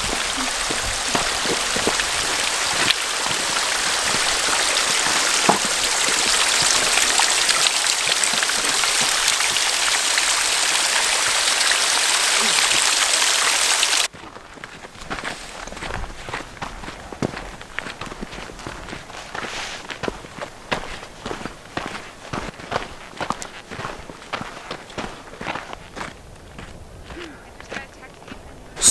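Water trickling and dripping off a seeping rock face in a steady splashing hiss. It cuts off suddenly about halfway through, leaving quieter footsteps on the trail.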